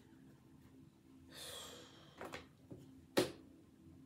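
A woman's long, soft breathy exhale about a second in, then a single sharp tap about three seconds in, over a faint steady hum.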